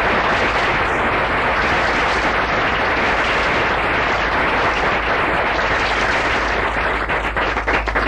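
Audience applauding steadily, thinning to a few separate claps near the end.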